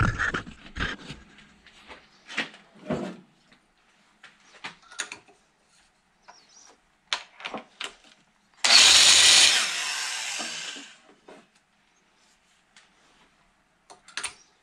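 Scattered knocks and clicks as the grinder and stone are handled on the pilot shaft. About nine seconds in, an electric valve seat grinder runs in a short burst, its stone grinding the cast-iron valve seat. It is loud for about a second and then winds down over the next two. This is a touch-up pass to finish the seat's face.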